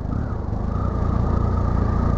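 Triumph motorcycle engine running steadily as the bike rolls slowly over dirt, a low even rumble with a thin steady whine above it from about half a second in.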